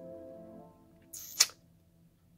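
Soft background music fading away, then a short high hiss ending in a sharp, camera-shutter-like click about a second and a half in.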